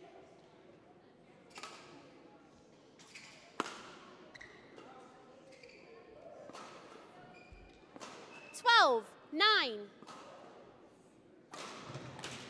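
Badminton rally: sharp racket strikes on the shuttlecock. About nine seconds in come two loud, short squeals, each falling in pitch.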